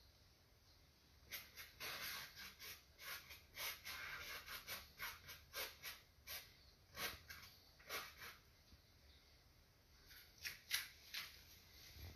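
Faint scratchy strokes of a fine paintbrush drawing on stretched canvas with thinned acrylic paint, a quick run of short strokes, a pause, then a few more near the end.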